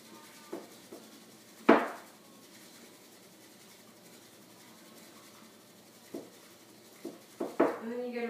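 Bamboo matcha whisk swishing and scraping in a ceramic bowl as matcha is whisked in a zigzag to a froth: a faint steady scratching, with a few short sharp knocks, the loudest about two seconds in and a few more near the end.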